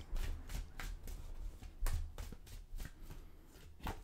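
Deck of tarot cards being shuffled by hand: a run of quick, irregular card snaps and riffles, with a louder snap near the end.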